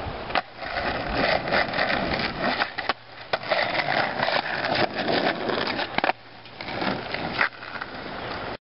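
Skateboard wheels rolling on rough asphalt, a steady rushing noise that drops away briefly twice, with several sharp clacks of the board under the rider's feet.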